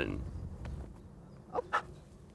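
A dog giving two short, faint yips in quick succession about one and a half seconds in, against a quiet outdoor background.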